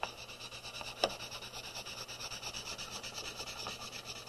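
Chalk pastel stick rubbed back and forth on drawing paper in quick, even strokes, a dry scratchy sound, with a single light tap about a second in.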